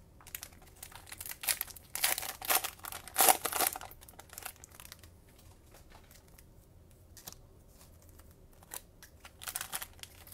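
Foil trading-card packs crinkling as hands handle them. The crinkling is loudest in a run about two to four seconds in, goes quiet, then picks up again just before the end.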